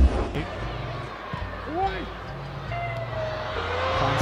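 Football match broadcast sound: an even wash of stadium noise with a few short shouted voices, over a low, steady bass line from the backing music.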